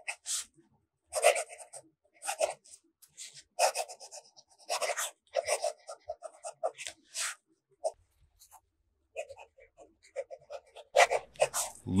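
Fountain pen nib scratching across reporter's notebook paper in cursive handwriting, a string of short strokes broken by brief pauses. There is a longer lull about two-thirds of the way in.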